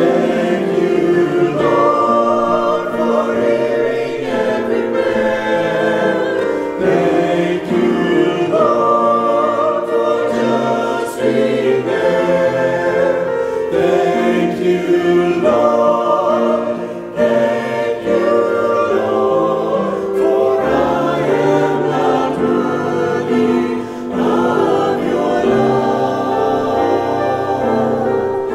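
Mixed-voice church choir singing an anthem in parts, phrase after phrase with short breaths between them.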